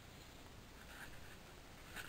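Near silence: room tone with a faint, soft rustle around the middle.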